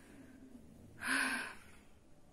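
A woman's single audible breath about a second in, a short breathy sound lasting about half a second.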